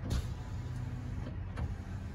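Power rear window of a Toyota Tundra CrewMax being operated: its electric motor gives a steady low hum as the glass moves.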